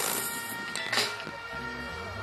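Live band music from a concert stage, with sustained keyboard-like tones and a few beats, growing gradually quieter.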